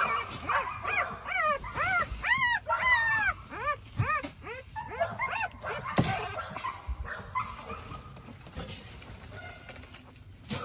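Week-old puppies whimpering and crying: a quick string of short, high squeals that rise and fall in pitch, thinning out after about five seconds.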